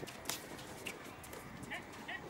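Sounds of basketball play on an outdoor court: scattered knocks of footsteps and ball on the hard surface, the sharpest about a quarter second in, and a few short sneaker squeaks.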